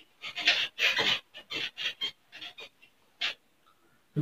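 Whiteboard eraser rubbing across a whiteboard: a quick run of short scrubbing swishes in the first few seconds, with one last stroke near the end.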